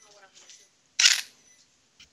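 Faint speech in the background, then one short, sharp hiss about a second in.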